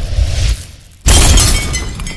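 Intro-animation sound effect: a low swell rising to a boom, then about a second in a sudden loud crash of shattering glass that rings and tinkles away.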